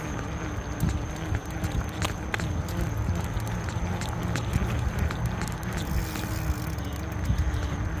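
Low rumble with scattered rattling clicks: riding and handling noise from a phone camera carried on a moving bicycle, with a faint wavering hum underneath.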